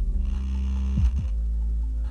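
Hip-hop beat with no vocals: a deep, steady bass line and two booming kick drums that drop in pitch about a second in, with a bright shimmer above from early on until just past a second in.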